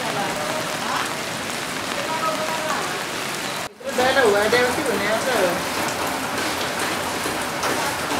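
Steady rain falling, a constant hiss, with people's voices in the background. The sound drops out briefly a little before halfway, then carries on.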